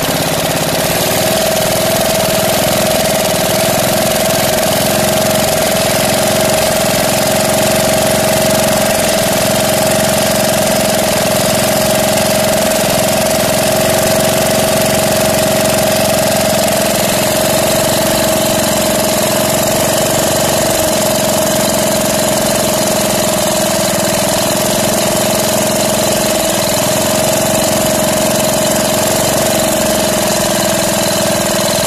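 KAMA single-cylinder diesel engine running steadily at idle, with a steady whine through it. The engine has been freshly top-overhauled with new piston rings and valve seals to cure hard starting and smoky exhaust.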